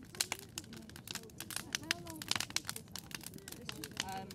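Wood fire crackling and popping inside a ceramic kiln during firing, with many irregular sharp snaps, and people talking quietly underneath.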